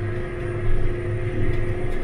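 Tractor engine running steadily under load, heard from inside the cab, with a low hum and a steady higher tone while it pulls a vertical tillage tool.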